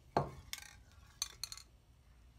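Aerosol spray paint cans being handled: one sharp knock, then a few light clicks and clinks.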